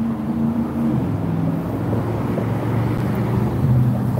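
A car engine running steadily: a low, even hum whose pitch wavers slightly.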